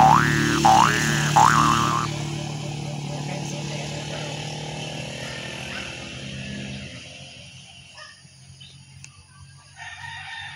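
A cartoon-style 'boing' sound effect, three quick rising glides in the first two seconds, over a steady low drone that fades out about seven seconds in. Faint outdoor ambience follows, and a rooster starts crowing at the very end.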